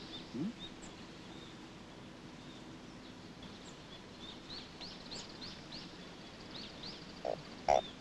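Birds chirping faintly with short, scattered calls, then two frog croaks near the end.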